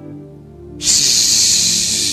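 A man's long, loud hissing "shhh" into a handheld microphone, imitating a television's static when it shows no picture. It starts about a second in, over soft steady background music.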